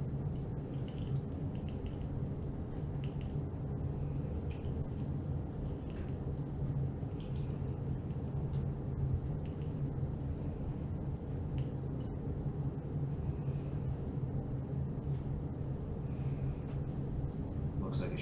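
Small airbrush air compressor running with a steady low hum, with faint light clicks as the airbrush and paint dropper are handled.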